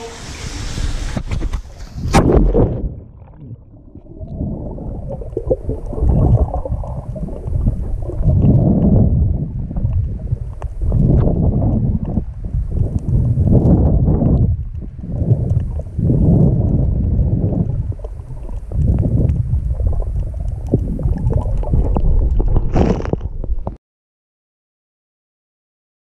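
Water heard through a submerged action camera: a muffled rushing and gurgling that swells and fades every second or two as a snorkeller swims through an underwater tunnel. A splash comes about two seconds in as he goes under, and the sound cuts off abruptly just before the end.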